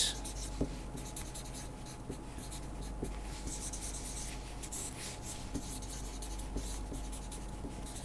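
Felt-tip marker writing on paper: faint, short scratching strokes as handwritten words and underlines are drawn, over a steady low hum.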